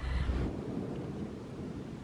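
Wind buffeting the microphone: a low rumble that eases about half a second in, leaving a faint, even rustle.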